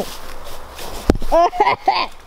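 Rushing, rustling noise of a handheld camera being moved, with a single bump about a second in, then young people's voices.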